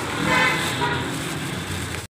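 A vehicle horn sounding briefly near the start over steady street traffic noise.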